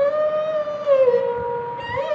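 Sarangi bowed in a long sustained note that slides down a step about a second in and is held again, with a brief break just before the end.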